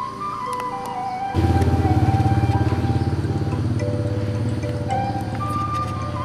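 Background music: a simple electronic melody of held notes. About a second and a half in, a loud low buzzing tone joins it and stays.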